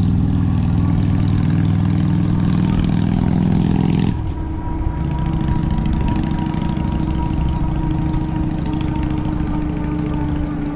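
A motorcycle engine runs loud and close as it passes, over wind on the microphone, and its sound stops abruptly about four seconds in. After that there is wind noise with the e-bike's electric motor giving a steady whine.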